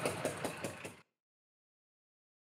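An engine idling with an even pulsing beat, about eight beats a second, that cuts off abruptly about a second in, leaving dead silence.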